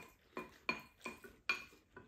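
Chopsticks and wooden spoons clinking and scraping against ceramic rice bowls while two people eat, with a sharp clink about every half second.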